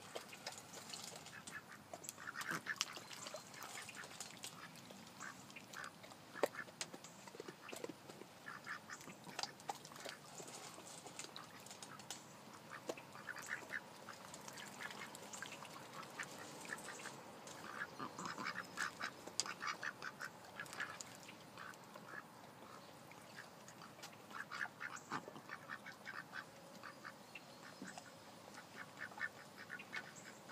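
White Pekin ducks quacking in short, rapid runs of calls that come and go every few seconds.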